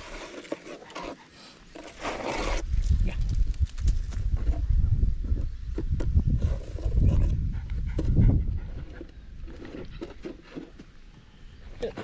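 A small dog sniffing and panting right at the microphone: a loud, breathy, rumbling noise that comes and goes for about six seconds from about two seconds in.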